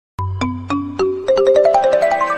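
Intro logo jingle: a short electronic melody of struck notes. Four spaced notes sound over a low bass tone, then a quick run of notes climbs in pitch.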